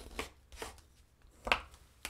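Bone folder rubbing along a fresh fold in paper, a few short dry strokes, with a sharper tap about a second and a half in.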